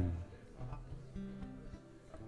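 Faint acoustic guitar: a low note rings on steadily from about halfway through, with a few soft finger ticks on the strings. The tail of a spoken word fades out at the very start.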